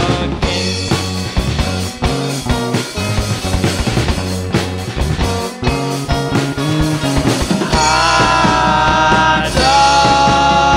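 A live rock band playing: electric guitar, bass guitar, drum kit and keyboard. Busy drumming fills the first part, and a long held note rings out from near the end.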